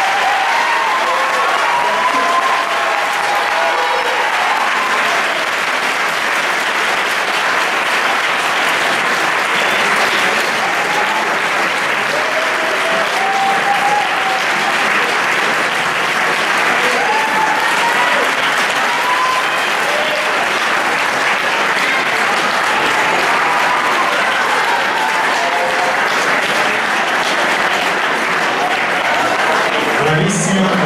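An audience applauding steadily throughout, with voices calling out over the clapping.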